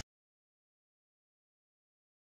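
Silence: the soundtrack cuts off sharply at the very start and nothing follows.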